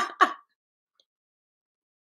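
The tail of a woman's laugh: two short bursts in the first half second, then silence.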